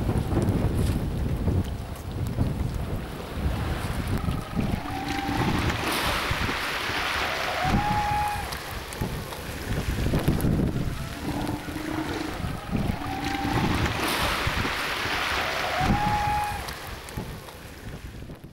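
Strong wind gusting hard across the microphone, a rumbling buffet that swells and eases with each gust. A few short, steady tones come in on the stronger gusts near the middle, and the wind eases near the end.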